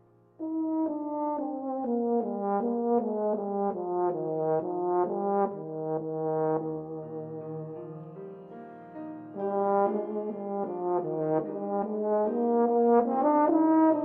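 Euphonium playing a solo melody over piano accompaniment. It enters about half a second in after a soft sustained passage, runs through a quick series of notes, eases off in the middle, then swells and climbs again near the end.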